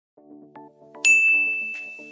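Intro sound effect: a few soft low musical notes, then about a second in a single loud, bright ding that rings on one high tone and slowly fades.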